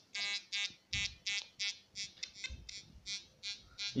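XP Deus metal detector giving its target signal through its headphone: a rapid series of short buzzy beeps, about three a second, as an aluminium rod is passed over the coil. The owner says it picks the aluminium up only at about 10 cm when it should respond at a metre, and takes the detector to be faulty.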